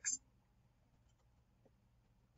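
Near silence: the last word of a woman's narration cuts off in the first moment, then only faint room tone.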